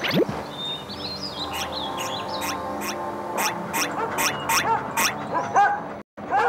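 Soundtrack of an animated intro film: music with cartoon sound effects, made of sustained tones and chirping pitch glides. Over it comes a run of sharp pops that come faster and faster toward the end.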